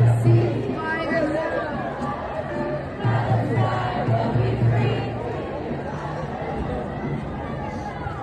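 Crowd of protest marchers on a street: several voices call out over a general crowd babble, with music playing underneath.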